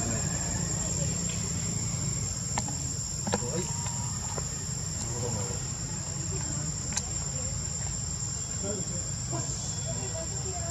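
Insects droning: a steady, high-pitched buzz that doesn't change, over a low rumble, with a few faint clicks.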